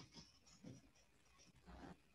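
Near silence: faint room tone over a call's audio, with a few soft, brief sounds about a third of a second in, near the middle and near the end.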